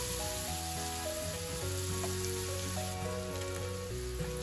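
Chopped onions sizzling as they fry in hot oil in a kadai, with soft background music playing a slow melody of held notes over it.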